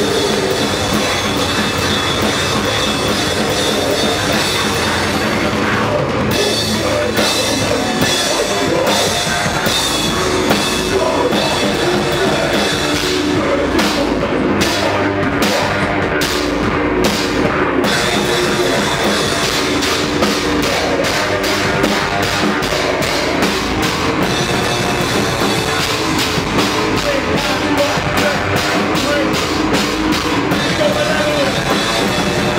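Live hardcore band playing loudly: distorted electric guitar, bass and drum kit. In the middle there is a stop-start stretch of separate hits with short gaps between them, before the full band runs on again.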